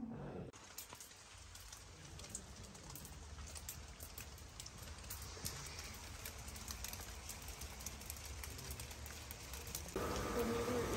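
Steady light rain falling, with many small drops ticking on hard surfaces.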